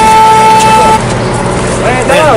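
A vehicle horn held on one long steady note that cuts off suddenly about a second in, with voices chattering underneath.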